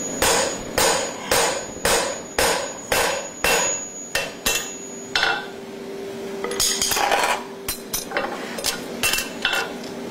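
A 2 lb hammer strikes a wood-handled 5/16" stud punch at about two blows a second for five seconds, driving it into a red-hot steel concave horseshoe on the anvil. After that come lighter, uneven metallic taps and clinks.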